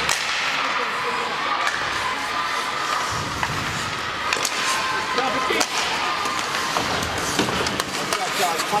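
Ice hockey play on a rink: a steady scraping hiss of skates on the ice with sharp clacks of sticks and puck, several times, and faint shouting voices in the background.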